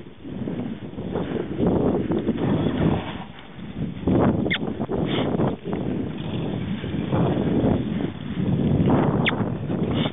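Saddled yearling Quarter Horse filly walking across grass: soft footfalls and uneven rustling noise that swells and fades, with two short high squeaks about halfway through and near the end.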